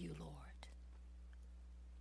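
A spoken prayer trailing off in the first half second, then near silence over a steady low hum.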